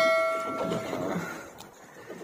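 Notification bell chime from a subscribe-button overlay, ringing out and fading away over about a second.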